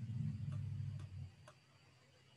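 Faint low hum that cuts off abruptly a little past a second in, with a few light clicks of a computer mouse about half a second apart.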